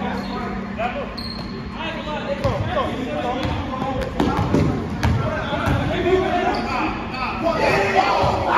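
A basketball bouncing on a hardwood gym floor in repeated thumps during a pickup game, with players' voices around it.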